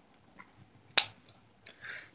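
A single sharp click about a second in, with a few faint small ticks around it.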